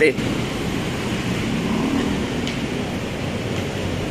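Steady road traffic noise from a busy city street below: a continuous rush and hum of passing cars and motorcycles.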